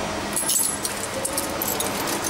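Coins clinking and jingling together in the hand at a ticket machine's coin slot, a quick run of small metallic clicks beginning about half a second in.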